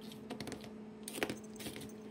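Faint, scattered light clicks and taps of a kitten handling a plastic ring it has pulled off a cardboard scratcher toy box, with one sharper click a little past halfway.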